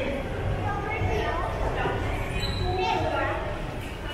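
Indistinct voices of people talking in a large, echoing metro station hall, over a low steady rumble.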